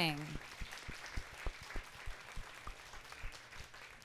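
Scattered audience applause, fairly quiet, with single claps standing out and fading a little toward the end.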